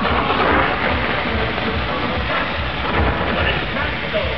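Loud live pop music from a stage sound system mixed with crowd noise, heard as a dense, distorted wash over a pulsing low beat, as from an overloaded phone microphone.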